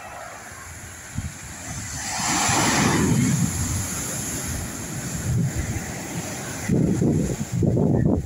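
Ocean surf breaking and washing up a sand beach, with wind buffeting the microphone. A wave's wash hisses loudest about two to three seconds in, and gusts of wind rumble near the end.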